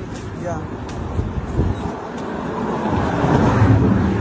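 Road traffic noise with a vehicle's low engine rumble, growing louder near the end.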